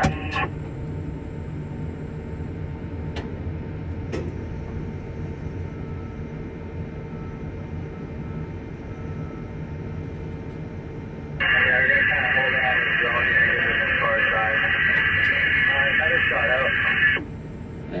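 Steady low hum in a tower crane cab, with a couple of faint clicks. About two-thirds of the way in, a two-way radio comes on with a ground worker's voice giving directions; it lasts about six seconds and cuts off abruptly.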